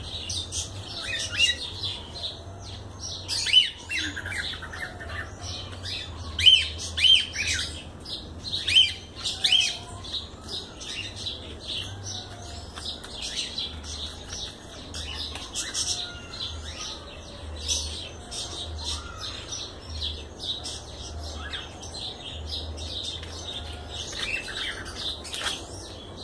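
Birds chirping and calling repeatedly in short, high-pitched bursts, several louder, sharper calls coming in the first ten seconds.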